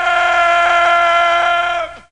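A long wailing cry held on one steady pitch, cutting off shortly before the end.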